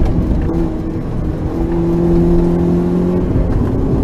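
Rally car's engine running hard at a steady high pitch, heard from inside the cabin over road and wind noise; the note drops away a little after three seconds in as the car slows for the next corner.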